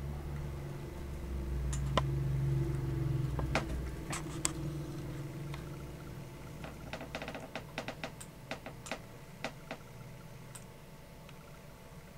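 Scattered clicking at a computer as images are stepped through, with a quick run of clicks about seven seconds in. A low hum sounds under the first few seconds and then fades.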